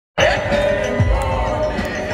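Live rock band music played through a concert sound system: a steady held chord with a deep kick-drum thump that drops in pitch about a second in.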